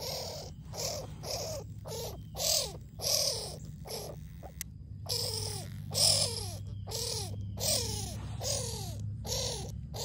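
Baby skunk making a steady run of short, breathy squeaking calls, each one dropping in pitch, about one and a half calls a second.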